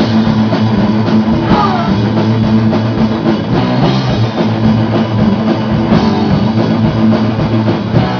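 Heavy metal band playing live and loud: distorted electric guitars and bass holding a low riff over a drum kit.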